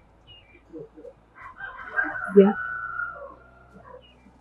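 A rooster crowing once: one long call beginning about one and a half seconds in and lasting nearly two seconds.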